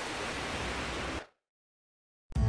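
Steady rain falling, an even hiss that cuts off suddenly a little over a second in.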